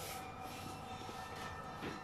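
Steady low background hum with a few faint constant tones, and a brief faint sound near the end.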